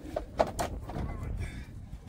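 Metal loading ramp being set against the rear of a van: a few sharp knocks in the first second, loudest about half a second in, then a low rumble as it settles into place.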